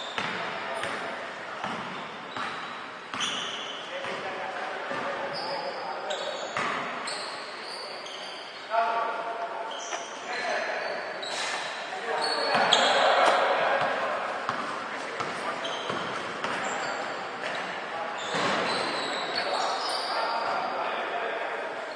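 Basketball game play in a reverberant gym: a ball bouncing on the court, short high sneaker squeaks, and players calling out indistinctly, with a louder stretch of voices about two-thirds of the way through.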